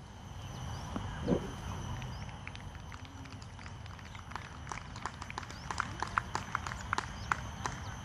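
Outdoor course ambience: a steady low rumble with scattered short chirps and clicks that come thicker in the second half, and a brief low call about a second in.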